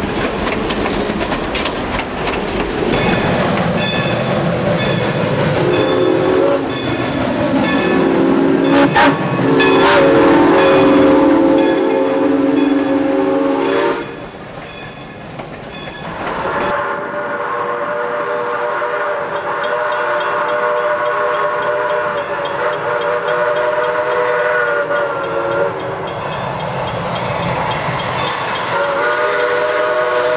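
Steam train at close range: steam hissing and coaches rolling by, with long steam whistle blasts held as steady chords, the first from about six seconds in and another near the middle. The sound changes abruptly twice, and a fresh whistle chord begins near the end.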